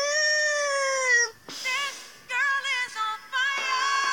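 A girl singing in a remix: one long held note for about the first second and a half, then a few short, wavering sung phrases. A backing track of steady held notes comes in near the end.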